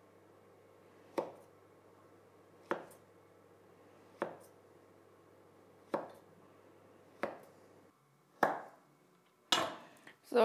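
Kitchen knife slicing a fridge-hardened roll of black-and-white cookie dough. Each cut ends in a sharp knock of the blade on the cutting board: seven knocks, about one every second and a half.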